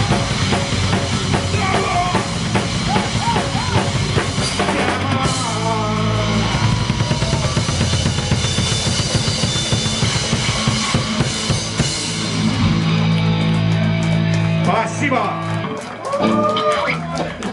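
Live rock band playing loud: a drum kit with kick and snare hits driving the beat, under electric guitars and bass.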